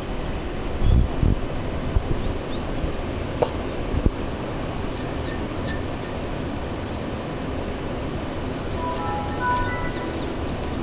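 A few soft knocks and bumps as a cat paws and a hand works among water gel beads in a ceramic plant pot, over a steady hiss. Near the end comes a short run of faint pitched tones, like a few notes of music or a chime.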